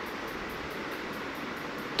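A hand rubbing ghee into maida flour in a bowl makes a steady, rustling sound, mixing it into a crumbly dough.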